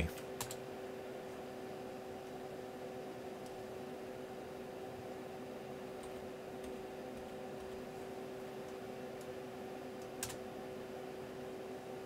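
A few keystrokes on a computer keyboard, the clearest just after the start and about ten seconds in, over the steady multi-tone hum of the running server.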